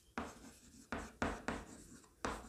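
Chalk scratching on a chalkboard as a word is written: four short strokes.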